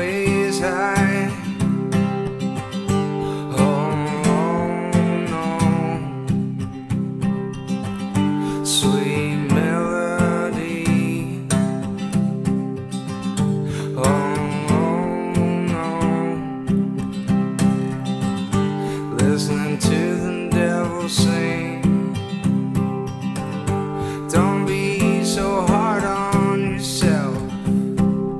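Acoustic guitar strummed in a steady rhythm, with a man's voice singing over it.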